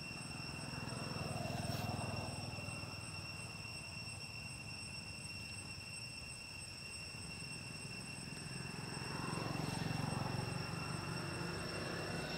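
Outdoor background sound: a steady high whine with a low rumble that swells twice, about a second in and again near the end.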